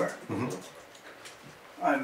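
A pause in men's conversation: a short murmured vocal sound just after the start, then quiet room tone, and a man's voice resumes near the end.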